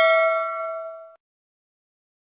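Notification-bell 'ding' sound effect ringing out with several clear steady tones, fading and cutting off abruptly about a second in.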